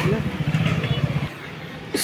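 Motorbike engine running nearby with a rapid low pulse, dropping away about a second in, with voices over it.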